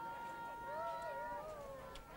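High-pitched girls' voices calling out across a field hockey pitch: one long call held on a steady pitch, overlapped by a second, wavering call.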